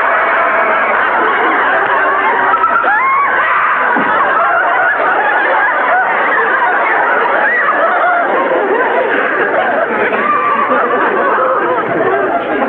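Studio audience laughing long and loud, many voices together.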